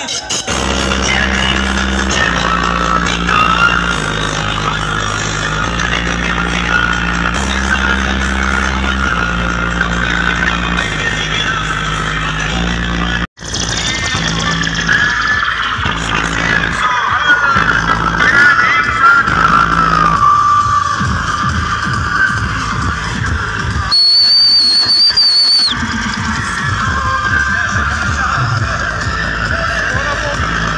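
Loud DJ music with heavy, repeating bass notes blasting from a truck-mounted DJ speaker system. The sound cuts out abruptly for an instant about 13 seconds in, then the music carries on. A high, steady whistling tone sounds over it for about two seconds near the end.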